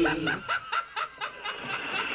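A laugh, a rapid run of short 'ha' pulses about six or seven a second that fades out by about a second and a half, as the bass-heavy backing music cuts off about half a second in.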